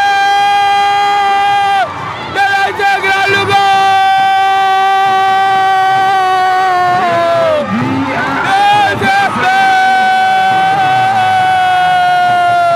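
A commentator's drawn-out goal call: three long, high held cries, each a few seconds long and falling off at its end, with short breaks between them, over a cheering crowd.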